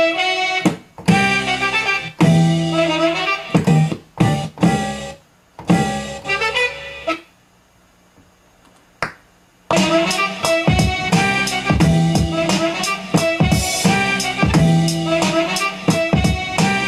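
Chopped music samples played from a MIDI keyboard controller to build a beat. They come in short stop-start phrases for about seven seconds, then there is a pause of a couple of seconds broken by a single hit, and continuous playback takes over from about ten seconds in.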